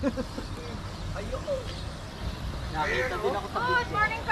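Indistinct voices over a steady low rumble, with the clearest voice coming in about three seconds in.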